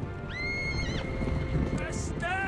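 A herd of horses galloping, the hoofbeats making a dense low rumble, with one horse giving a high whinny about a third of a second in. Music plays underneath.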